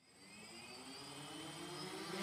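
Quadcopter electric motors and propellers spinning up: a whine that rises slightly in pitch and grows steadily louder from silence.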